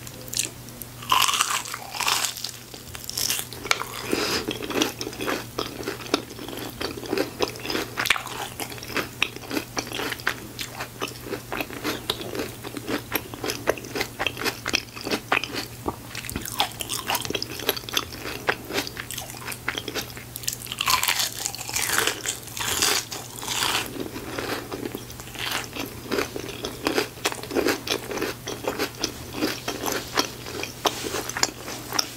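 Close-miked eating: crunchy bites into a crispy breaded fried strip, with a cluster of loud crunches near the start and another about two-thirds of the way through, and steady chewing between. A faint low steady hum runs underneath.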